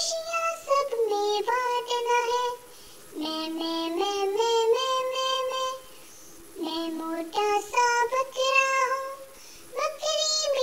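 A child's voice singing an Urdu nursery song in short sung phrases over light music, with a pause between each phrase; the later lines are sung as "maa maa", imitating a goat's bleat.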